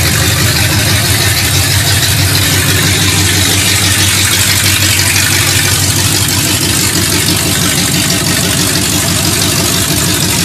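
A Ford 351 V8 in a 1967 Mustang idling steadily and loud, with no exhaust system fitted, so it runs through open pipes.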